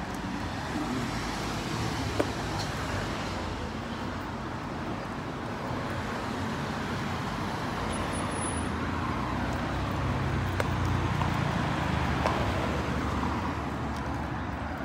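Road traffic going by, a steady rumbling hiss that swells in the last few seconds. A single sharp tap comes about two seconds in.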